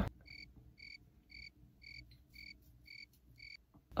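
Cricket chirping sound effect: seven short, evenly spaced high chirps, about two a second, over dead silence.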